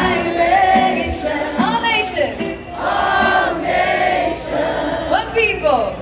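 Live reggae performance heard from the audience through the PA: many voices singing together, choir-like, with the bass dropped out so that little but the singing remains. A couple of rising vocal swoops come through.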